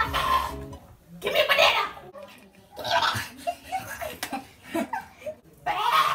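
People laughing in several separate bursts, with a few low notes of background music fading out in the first second.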